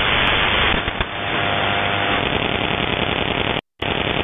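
Shortwave radio static from an SDR receiver tuned to 12227 kHz: a steady hiss of band noise once the E07 numbers station's voice has finished its closing zeros. A sharp click about a second in, and the audio cuts out briefly near the end.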